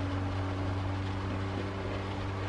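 A steady low mechanical hum, like a motor or engine running, with a faint even hiss over it.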